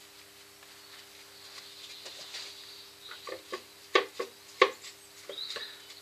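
Workshop handling noise from a paper towel being soaked with cellulose sealer and the bowl being handled. A faint rustle comes first, then from about halfway a run of sharp taps and knocks. A steady low hum runs underneath.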